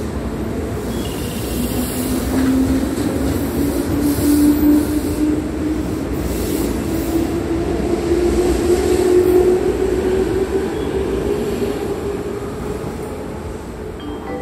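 JR West 221 series electric train pulling out and accelerating past: a whine that climbs slowly in pitch over the rumble of wheels on rail, loudest midway and fading away over the last few seconds as the train moves off.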